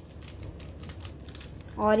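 Seasoning being shaken out of a small paper sachet over a plate, heard as a string of light, quick clicks and crinkles.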